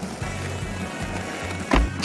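Skateboard wheels rolling, under background music, then a heavy thud near the end as the board crashes into a wall.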